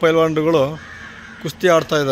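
A man's voice speaking in short phrases, with a brief pause in the middle.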